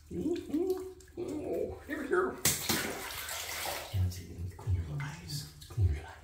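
Bath water splashing and sloshing in a bathtub for about a second midway, as a wet Sphynx cat is handled in shallow water. A voice makes short wordless sounds before it, and a few low bumps follow near the end.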